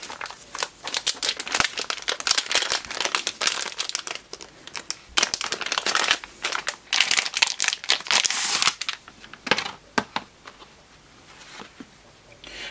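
Plastic anti-static bag crinkling and rustling as it is handled and opened by hand, in a dense irregular crackle that thins out to a few scattered clicks about three-quarters of the way through.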